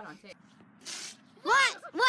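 Voices: a short hiss about a second in, then a loud cry that rises and falls in pitch.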